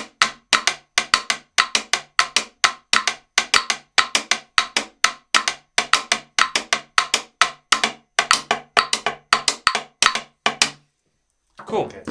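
A wooden guagua (catá) struck with two sticks playing the rumba guaguancó catá pattern, with claves playing the clave rhythm against it: a rapid, steady run of sharp wooden clicks that stops about a second before the end.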